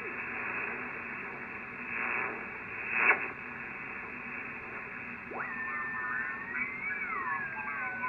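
HF transceiver in sideband receive giving out band static while its tuning knob is turned, with a short crackle about three seconds in. After about five seconds a whistle jumps in and glides slowly down in pitch as the dial sweeps across a signal. The heavy noise is blamed on an LED light in the shack.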